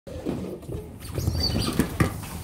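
A group of otters scrabbling and pattering about, with a brief high squeak about one and a half seconds in.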